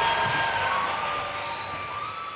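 The final chord of a choir and band dying away in a reverberant hall, with one high note held on as the rest fades.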